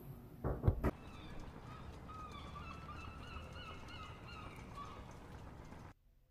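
A short thump just before a second in, then a faint run of quick, high-pitched honking calls, about three a second, that cuts off suddenly at the end.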